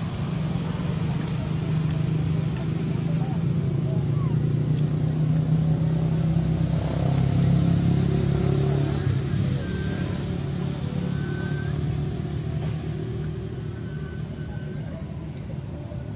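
A steady low engine drone from a running motor, swelling slightly near the middle and easing off toward the end.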